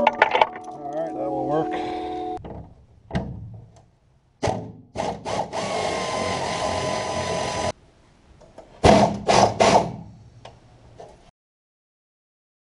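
Bursts of hand-tool noise, in short pieces that start and stop abruptly, from work on the hood fasteners of a John Deere 5520 tractor. The longest piece runs about three seconds. A few short loud bursts follow near the end.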